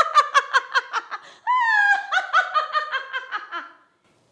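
A woman's exaggerated, high-pitched witch cackle: quick "ha-ha-ha" bursts, a drawn-out falling shriek about a second and a half in, then more cackling that trails off shortly before the end.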